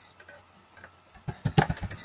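Computer keyboard keystrokes: a quiet first second, then a quick run of about half a dozen key clicks a little past a second in.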